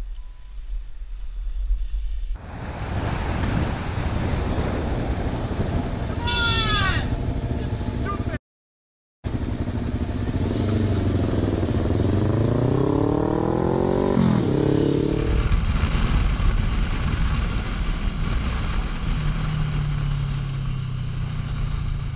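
Motorcycle engine heard from the rider's own camera while riding, with road and wind noise. About halfway through the engine speeds up, its pitch rising in steps and then dropping sharply, and then it settles into a steady run. A short high squeal comes early on, and a brief dropout to silence comes just before the acceleration.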